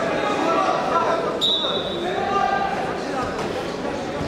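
Voices talking and calling in a large, echoing sports hall during a wrestling bout, with a short, sharp high-pitched squeak about a second and a half in.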